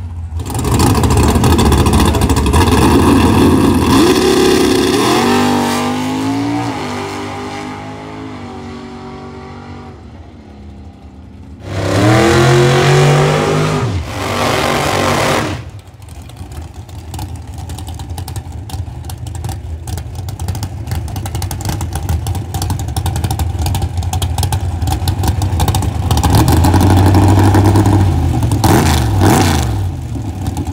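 Drag-race car engines at full throttle. One car launches and pulls away, its engine note falling and fading. Another car runs a short high-revving burnout that cuts off sharply, and then engines idle and rev as the cars stage.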